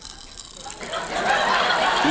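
Pop Rocks candy crackling and popping in an open mouth, picked up by a microphone held right at the lips. The crackle starts about half a second in and grows steadily louder.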